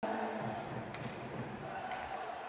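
Ice hockey arena sound: crowd chatter in a large hall, with two sharp knocks about a second apart from play on the ice.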